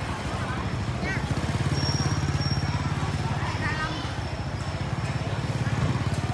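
Small motorbike engine idling close by, a steady rapid putter, with faint voices in the background.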